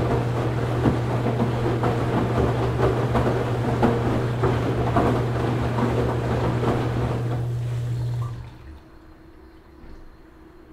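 Washing machine running: a steady low motor hum with crackling and small knocks from the drum, which cuts off abruptly about eight seconds in, leaving only a faint hum.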